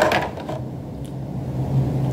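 Small plastic toy pieces handled and fitted together, with a sharp click right at the start, over a steady low hum.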